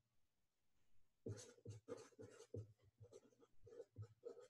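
Felt-tip marker writing digits on paper: a faint run of short pen strokes starting about a second in.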